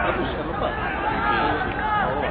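Spectators' voices chattering, several people talking over one another close by, over the steady murmur of a sparse football crowd.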